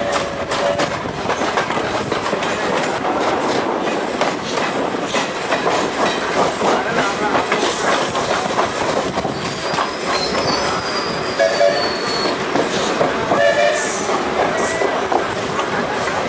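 Train wheels running on the rails and clattering over rail joints, heard through the open doorway of a moving suburban train with a coach-hauled train on the parallel track. A thin, high wheel squeal comes in around the middle.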